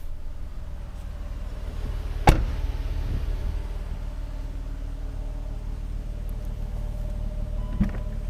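A Jeep Cherokee's rear passenger door shut with one sharp, loud thud a little over two seconds in, over a steady low hum. Just before the end, a smaller click as the liftgate's release is pressed.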